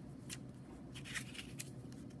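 Faint rustling of construction paper as a hand brushes and handles a layered paper foldable, a few soft rustles.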